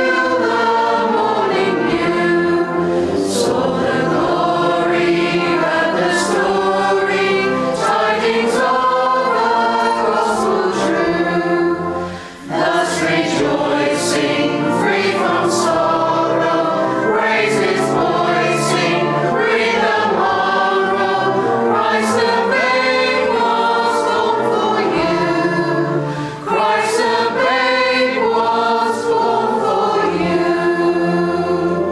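Mixed choir of men and women singing a carol, with two short breaks between phrases, about twelve and twenty-six seconds in.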